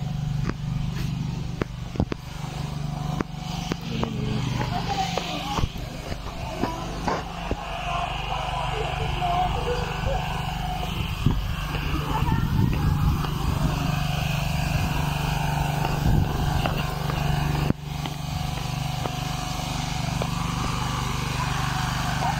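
Indistinct voices over a steady low hum, with occasional sharp clicks.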